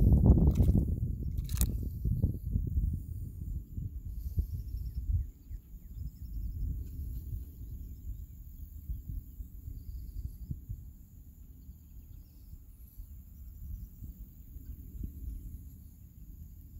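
Water splashing and sloshing for the first couple of seconds as an alligator moves in the shallows with a tilapia in its jaws. Then a low rumble that fades after about five seconds, with faint insects chirping.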